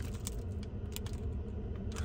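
Faint light clicks and taps from hands handling snack packaging, over a steady low hum.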